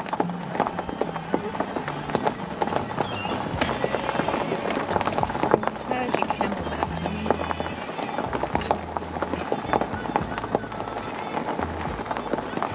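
Car tyres rolling over a gravel road, a continuous crunch of many small stone clicks, under background music with a stepping bass line.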